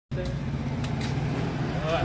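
A steady low motor hum, with a few faint clicks. A voice starts up just before the end.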